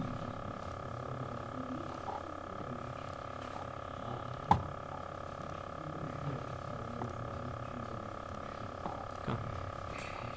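Quiet room tone carrying a steady hum of several fixed tones, broken by a sharp click about four and a half seconds in and a smaller click near the end.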